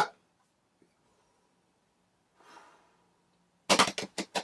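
Body-sound performance: a sharp hand clap right at the start, then quiet with a faint breath about two and a half seconds in, then a quick run of sharp percussive hits near the end.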